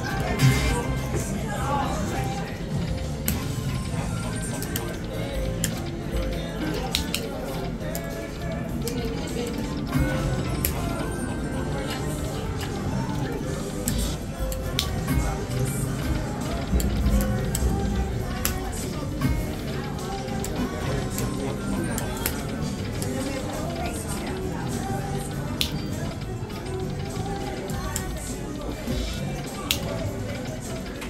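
Dragon Link Happy & Prosperous video slot machine playing its music and game sounds while the reels spin at a $5 bet, with scattered short clicks, over casino chatter.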